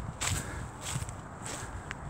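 Footsteps on dry fallen leaves: a few soft crunching footfalls.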